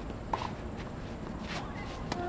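Tennis balls struck by rackets during a doubles rally: two sharp pops a little over a second apart, with fainter taps between them.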